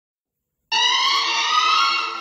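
Silence, then about two-thirds of a second in the song's instrumental backing music starts with a loud held note that rises slightly in pitch.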